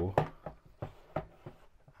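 Hands working music production gear on a desk: several light clicks and taps, a fraction of a second apart, as buttons and parts are handled.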